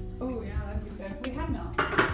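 Kitchen dishes and a pan being handled, with a sharp clatter near the end as one is set down.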